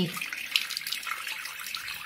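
Water tap running steadily into a sink, a constant rush of water.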